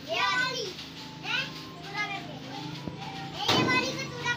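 Children's high-pitched voices calling out in short cries, about four times, over a faint low steady hum.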